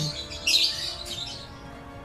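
Background music with faint sustained tones, and a short high-pitched burst about half a second in.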